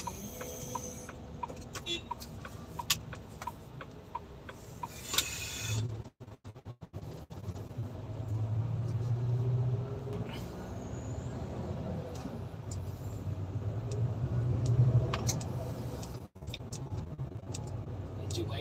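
Inside a semi-truck cab, the turn-signal indicator ticks about twice a second. From about eight seconds in, the truck's diesel engine rumbles louder as it pulls away and accelerates through the parking area, with brief dropouts in the sound.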